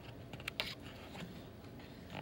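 Paper pages of a booklet being handled and turned, with a few short crisp rustles and flicks, the strongest about half a second in.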